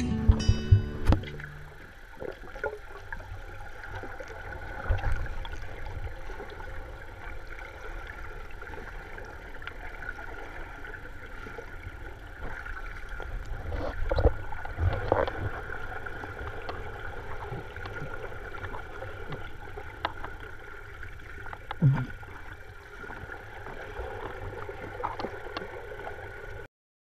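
Underwater pool sound of a swimmer doing front crawl: muffled water rushing and bubbling, with scattered low thumps from the strokes and kicks. A short, low, muffled hum falls in pitch about 22 seconds in.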